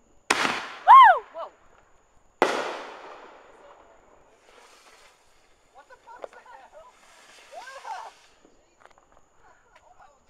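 Two firework bangs about two seconds apart, the second echoing away over a couple of seconds. Right after the first bang comes a short, loud, high-pitched sound that rises and then falls. Faint voices follow later.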